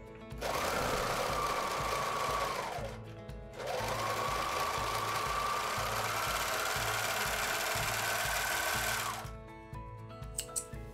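Overlock sewing machine (serger) stitching along the raw edge of a seam, run in two bursts: a short one of about two and a half seconds, then after a brief pause a longer one of about five and a half seconds. Each burst has a motor whine that winds up at the start and winds down at the stop.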